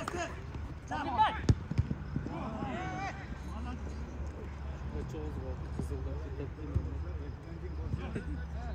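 Football kicked once, sharply, about a second and a half in, with players' short shouts in the first few seconds over a steady low rumble.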